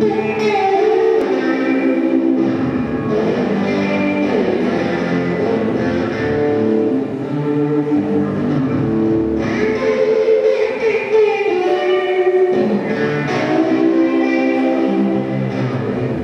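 Live band music led by an electric guitar playing sustained, sliding notes, amplified through a club PA.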